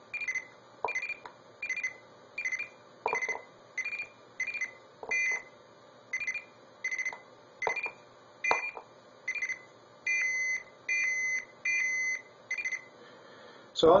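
Arduino blue box sending CCITT No. 4 (SS4) digit signals through a telephone earpiece: each keypress gives a short group of beeps near 2 kHz, where the 2040 Hz and 2400 Hz tones code the four binary bits of the digit. About sixteen groups follow one another at a bit more than one a second, the last three with longer, steadier tones, and a few faint clicks fall between them.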